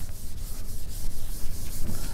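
A cloth wiping across a chalkboard, erasing chalk writing in rough scrubbing strokes.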